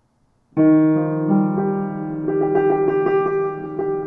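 Acoustic piano entering about half a second in with a struck, sustained chord. The notes shift, and a run of quickly repeated notes follows through the middle.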